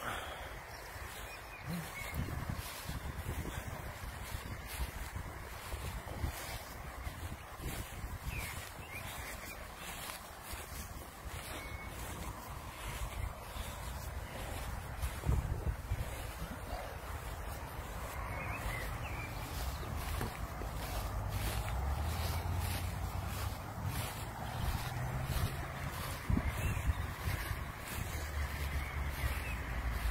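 Wind buffeting the microphone outdoors: an uneven low rumble that grows stronger in the second half, with a few faint bird chirps.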